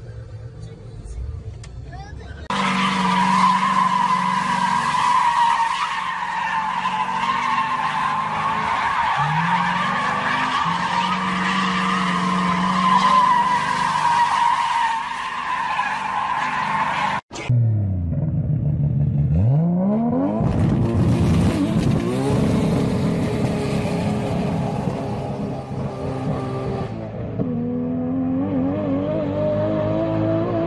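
Cars doing burnouts: tyres squealing steadily while the engines are held at high revs, heard across several joined clips. A sudden cut about 17 seconds in, after which the engine revs rise and fall repeatedly.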